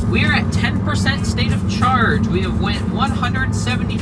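Steady tyre and road noise inside the cabin of a Tesla Model 3 at highway speed, with a man talking over it.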